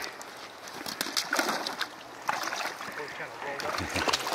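Water sloshing and splashing around legs wading through a shallow river, with scattered small knocks and cracks.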